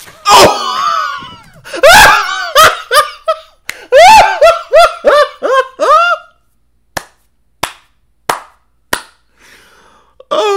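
A man laughing hard in loud, breathless bursts for about six seconds, then four sharp slaps a little over half a second apart.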